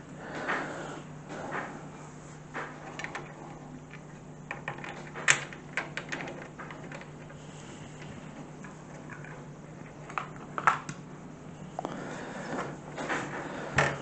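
Scattered light clicks and knocks of a PC case fan's plastic frame and spacers being handled and pushed into the metal case, the sharpest about five seconds in and a few more around ten seconds, over a faint steady low hum.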